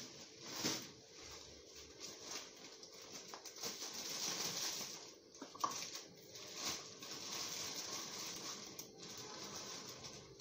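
Rustling and pattering with a few light clicks and knocks, in uneven swells: a cup of sugar being scooped and measured out.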